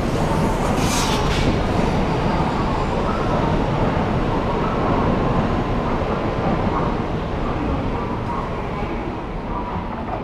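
N700-series Shinkansen train running along the platform: a steady rumble of wheels on rail with a faint high tone. It grows quieter over the last few seconds as the final car passes and the train moves off.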